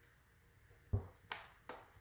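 A wooden measuring stick set down on the wargaming table, giving two sharp light clicks in quick succession.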